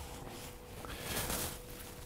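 Faint rustle of clothing rubbing against a lavalier microphone as it is tucked away, swelling about a second in, over a faint steady hum.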